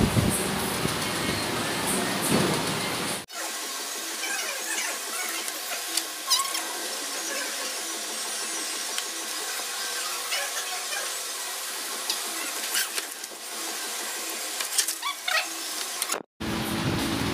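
Restaurant room noise: a steady fan-like hum with faint background music and a few short clinks. About three seconds in the sound cuts out for an instant and comes back thinner, with its low end gone.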